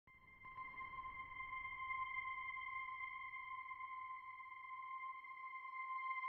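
Software-synthesizer intro of an electronic rock track: a steady, high, pure electronic tone, with a second one an octave above, held over a low rumbling drone that fades in during the first second or two.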